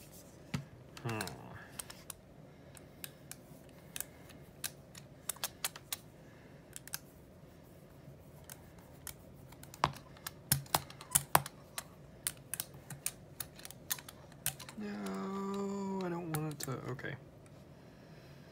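Rubber brayer rolled back and forth through fluid acrylic paint on a Ranger gel printing plate, giving a run of sharp sticky clicks and ticks, thickest in the middle stretch. A man hums briefly near the end, falling in pitch.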